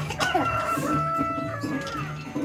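A rooster crowing once: one long call that rises at the start, holds for about a second and a half, and drops away at the end.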